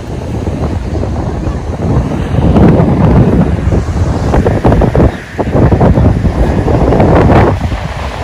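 Sea wind buffeting the microphone in loud, gusty rumbles over the wash of surf, strongest in the middle with a brief lull about five seconds in.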